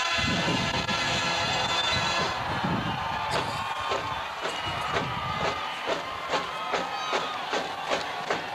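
Marching band: a held brass chord dies away over the first two seconds with crowd cheering, then the drumline starts a steady cadence of sharp hits, about two or three a second.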